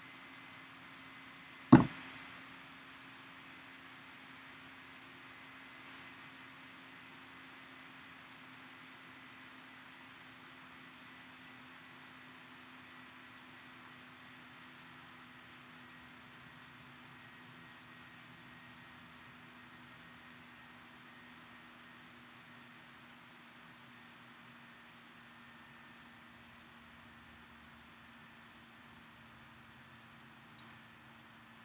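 Faint steady room tone, a low hum with hiss, broken about two seconds in by a single sharp knock.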